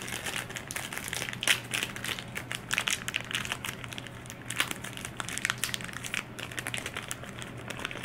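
A sealed clear plastic bandage packet crinkling and crackling in irregular bursts as fingers pinch, twist and pull at it, trying to tear it open. A faint steady hum sits underneath.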